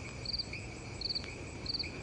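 Insects chirping: one repeats a short chirp of quick pulses about every two-thirds of a second over a steady, higher-pitched insect drone.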